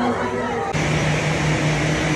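Bar chatter with music, cut off a little under a second in by the steady hiss and low hum of a parked jet airliner running on the apron.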